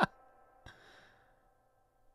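A man's laughter trailing off: a last short laugh right at the start, then a breathy exhale about two thirds of a second in that fades away.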